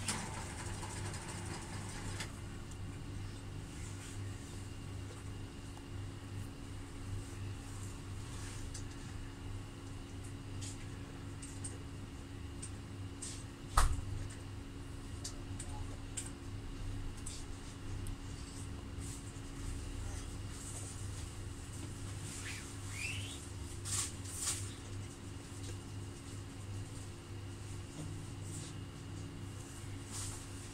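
Epson L120 inkjet printer running its head-cleaning cycle: a steady low mechanical hum with scattered light clicks, one sharp knock about 14 seconds in and a short rising squeak a little after 20 seconds.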